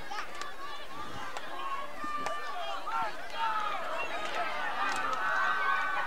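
Crowd at a high school football game, many voices shouting and cheering at once, growing a little louder over the last few seconds.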